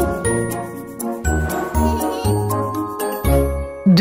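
Short musical intro jingle: bright chiming, bell-like notes over a few low bass thumps.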